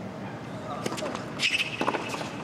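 Tennis ball being struck by rackets and bouncing on a hard court during a rally: three short, sharp strokes in the second half.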